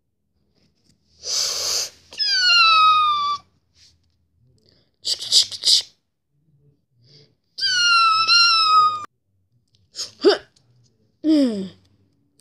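A child making mouth sound effects for a toy fight: short hissing bursts and two high squealing cries that sag slightly in pitch, ending with a quick falling whoop.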